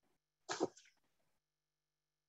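A single short, sharp breath noise from a person, about half a second in.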